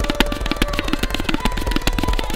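Tabla playing a fast solo in teentaal drut, about ten strokes a second, with deep bayan tones under the sharper dayan strokes. A sarangi holds long notes underneath as accompaniment.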